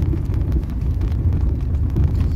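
Steady low rumble of a car's engine and road noise, heard from inside the cabin while driving.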